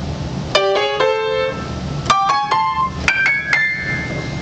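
Piano playing the collapsing-thirds figure, a raised fourth or flatted fifth that collapses onto a third. It comes in three quick phrases, each settling on a held third, climbing higher each time.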